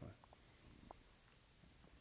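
Near silence: faint room tone with a few very faint brief sounds.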